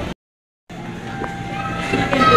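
A brief dropout to silence, then the background noise of an indoor play area: a steady low hum with held tones that grow louder toward the end.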